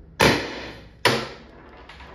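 Two sharp CO2 pops, about a second apart, from a Salt Supply S2 less-lethal launcher firing Joule V2 projectiles, its CO2 restrictor drilled to 1.6 mm.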